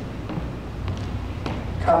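A few faint thuds of sneakers landing on a plastic aerobics step and hardwood floor during side lunges, over a low steady hum.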